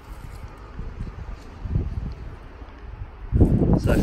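Low, uneven wind rumble on the phone's microphone. A man's voice starts near the end.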